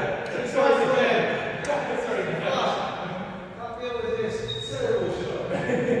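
Players' voices talking in a sports hall, with a couple of brief sharp taps early on.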